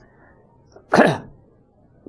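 A man's single short, breathy vocal burst about a second in, falling in pitch, a brief exclamation through a close clip-on microphone.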